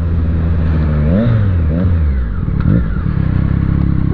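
Motorcycle engine heard from the rider's position, with wind noise. Its pitch rises briefly about a second in, then drops and settles into a low, steady run as the bike slows for a turn at a junction.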